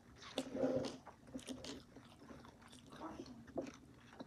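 A person chewing and biting food, with irregular wet mouth clicks and a louder mouthful about half a second in.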